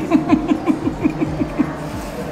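A man's rapid string of closed-mouth "mm" hums while chewing, about six a second, each dropping in pitch, stopping near the end.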